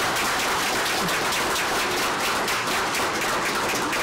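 A roomful of people applauding: steady, dense clapping.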